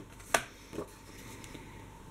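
A sharp click about a third of a second in, then a softer knock, from handling paper and a paper trimmer on a table.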